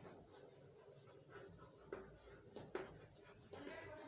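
Chalk writing on a chalkboard: faint scratching, with a few light taps of the chalk against the board as the letters are formed.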